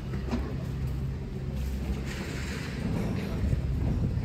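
Outdoor street ambience while walking: a low, steady rumble with a faint hiss above it.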